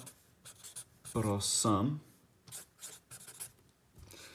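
Pen writing on a paper notepad in a run of short strokes. A man's voice is heard briefly a little after a second in.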